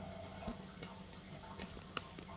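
A few faint, sharp clicks and light taps from objects being handled, over a low steady hum.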